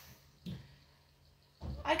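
A pause in a woman's talk: a short low vocal sound about half a second in, then faint room tone with a low steady hum, before her speech starts again near the end.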